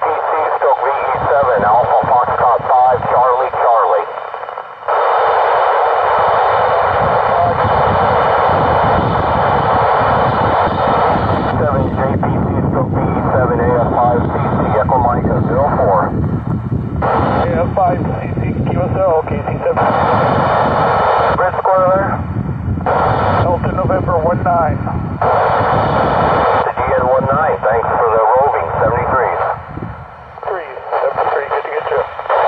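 Voices of amateur stations received over the TEVEL-3 satellite's downlink, coming through an Icom ID-4100A radio's speaker. The audio is thin and band-limited over a steady hiss, and the signal drops briefly about four seconds in.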